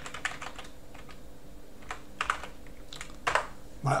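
Computer keyboard typing: a quick run of keystrokes at the start, then a few separate clicks, the loudest about three seconds in.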